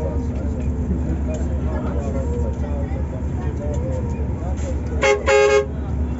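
A vehicle horn sounds about five seconds in, a short toot followed by a longer blast of about half a second, over the steady low rumble of a Yutong coach heard from inside its cabin.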